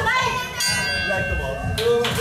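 A ring bell signal: a steady ringing tone about a second long that starts suddenly about half a second in and cuts off sharply, over shouting voices of spectators.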